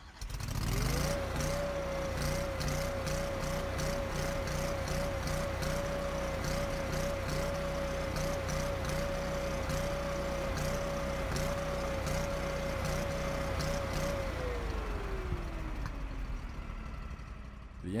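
Kohler ECH-series EFI V-twin engine starting and running at high speed, around 3700 rpm, its pitch wavering slightly and regularly. About 14 seconds in it winds down to low idle, around 1400 rpm, as the idle-down solenoid activates. The engine runs this way because its throttle position sensor calibration is off by 7.4% and stabilizes only after the idle-down solenoid activates.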